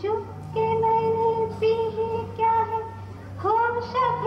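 A woman singing a Bollywood film song in a high voice, with long held notes in short phrases, over a steady low hum.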